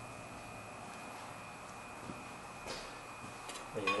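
Quiet workshop room tone with a faint steady high-pitched whine, and a few light knocks in the second half.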